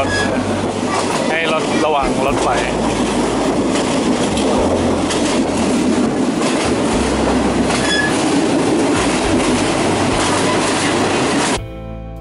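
Passenger train running at speed, heard from an open carriage window: a steady rush of wheels on the rails and wind, with a deep rumble under it. A brief high tone sounds about eight seconds in.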